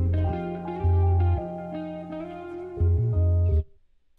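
A self-made melody loop being auditioned from a sample library in FL Studio: sustained chords over deep bass notes that change several times, then the preview cuts off suddenly near the end.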